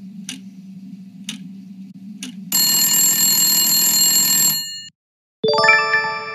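Quiz-show sound effects: a countdown clock ticking about once a second over a low drone, then a loud, harsh time's-up alarm for about two seconds. After a brief silence, a quick rising run of chime notes rings on as the correct answer is revealed.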